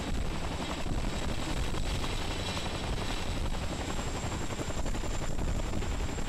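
Boeing CH-47 Chinook tandem-rotor helicopter hovering with a sling load. Its rotor noise runs steadily, with a constant high whine above it.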